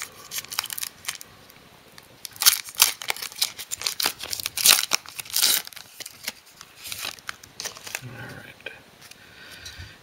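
Foil wrapper of a trading-card pack being torn open and crinkled by hand: a run of sharp rips and crinkles lasting several seconds, then dying down.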